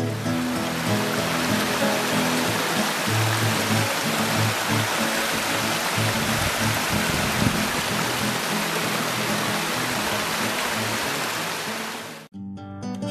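Waterfall water pouring and splashing in a steady rush, with music of low held notes underneath; both fade out near the end.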